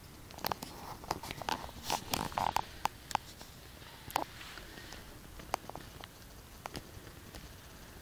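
Irregular light taps, crackles and rustles of someone walking barefoot along a dirt forest path with a handheld camera, densest in the first three seconds and sparser after.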